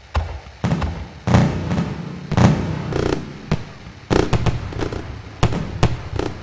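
Fireworks sound effect: an irregular string of about a dozen sharp bangs and crackles, several close together around four to six seconds in.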